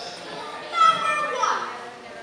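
Speech only: performers on stage speaking or calling out in raised, high-pitched voices, loudest a little under a second in.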